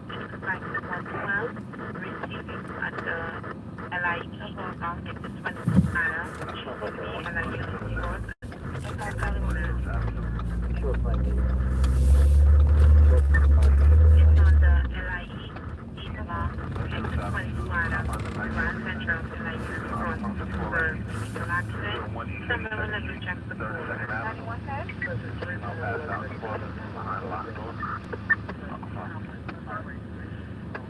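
Scanner radio chatter: dispatch voices over a small radio speaker. About a third of the way in, a low rumble builds for several seconds, then cuts off suddenly around the middle.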